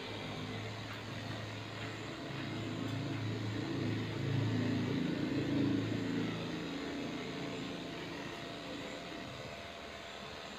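A motor running with a low, wavering hum that grows louder about four seconds in and eases off again after about six seconds.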